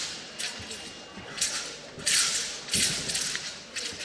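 A thin, flexible wushu broadsword (nandao) blade swishing and snapping through the air in fast cuts. There are about five sharp whip-like swishes, with a dull thump or two from footwork on the carpet.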